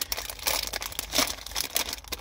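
Plastic packaging crinkling as it is handled, a quick irregular run of crackles.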